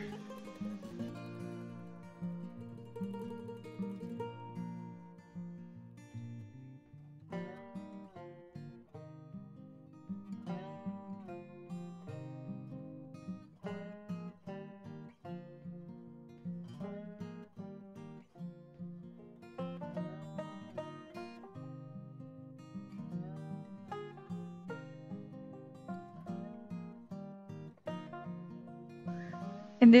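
Background music: an acoustic guitar tune with plucked notes, growing fuller about a quarter of the way in.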